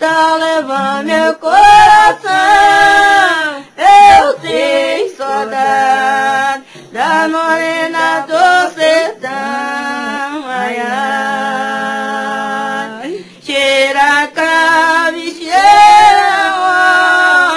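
Two women singing a congado song unaccompanied, in long held notes with short breaks between phrases.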